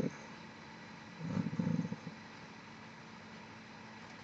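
Quiet room tone with a faint steady hum; a little over a second in, a man's voice gives a brief low murmur lasting under a second, a hesitation between words.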